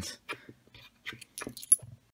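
Copper-nickel 10p coins clicking and clinking as they are gathered and picked up off a table, a string of small sharp taps; the loudest comes near the end with a brief high metallic ring.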